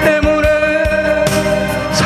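A man singing a Korean trot song into a handheld microphone over instrumental accompaniment, with a steady kick-drum beat.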